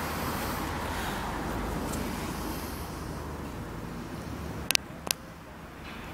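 Steady background traffic noise, with two sharp clicks about half a second apart near the end.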